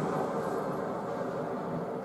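A steady low hum, like a fan or motor running, with no speech.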